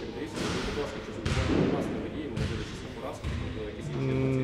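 A faint voice speaking off the microphone, with rustling noise.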